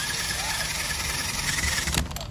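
Pneumatic tool spinning a rubber eraser wheel against the RV's painted front panel, stripping off leftover adhesive: a steady loud hiss with a high whine that cuts off just before the end.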